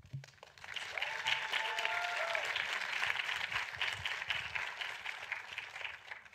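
Audience applauding, swelling about half a second in and tailing off near the end, with a short cheer from someone in the crowd about a second in.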